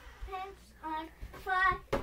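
A child's voice singing a few short notes in a sing-song way.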